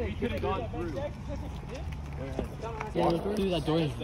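Several teenage boys talking indistinctly while walking, with a closer voice louder near the end, over a low steady rumble.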